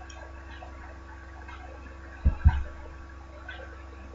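Quiet room background with a steady low hum and faint ticks about once a second. Two dull low thumps in quick succession a little past halfway are the loudest sounds.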